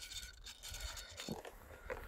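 Faint footsteps crunching in soft snow, a few scattered steps over a low rumble.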